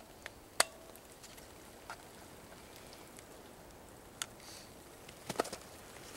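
Sharp plastic clicks from a Bushnell Trophy Cam trail camera's case being handled and opened. There is a loud click about half a second in, a few scattered smaller clicks, and a quick run of clicks near the end.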